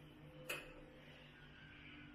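Quiet room tone with a faint steady low hum and one sharp click about half a second in.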